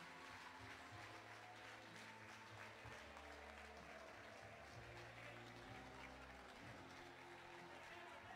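Faint applause, many hands clapping at a distance, over a low hum.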